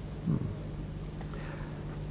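A man's short, low "hmm" about a quarter second in, followed by quiet room tone over a steady low hum.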